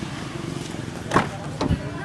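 The rear passenger door of a 2010 Nissan Grand Livina being opened: two sharp clicks from the handle and latch about half a second apart, the first the louder, over a low steady rumble.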